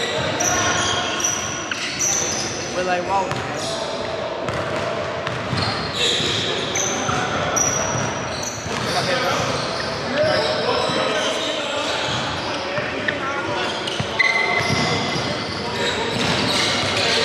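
Basketball bouncing on a hardwood gym floor amid indistinct talk among players, echoing in a large hall.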